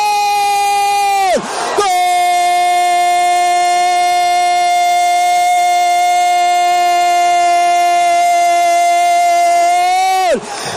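A Uruguayan radio football commentator's drawn-out goal cry, 'goool', called for Defensor Sporting's equaliser. A first held call falls away about a second in, followed by a quick breath. The cry is then held on one steady pitch for about eight seconds.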